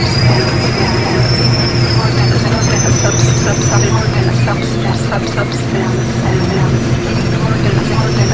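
Busy city street noise: a steady low engine hum of traffic under indistinct voices, with thin high whining tones that drift slowly in pitch.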